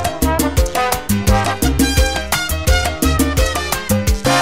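Classic salsa music playing, with a steady, evenly repeating percussion beat over a bass line and pitched instrumental notes.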